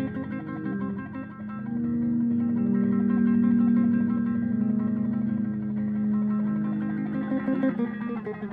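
Solo electric bass guitar played through a small amp with looping effects, with layered notes. A quick repeating figure gives way about two seconds in to a long held note that swells in and sustains for several seconds.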